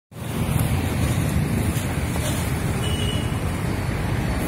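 Steady low rumbling outdoor background noise with no distinct event in it.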